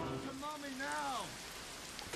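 Audio of a stream-alert video clip: a steady rain-like hiss with one drawn-out voice sound that rises and then falls in pitch, about half a second to a second and a half in.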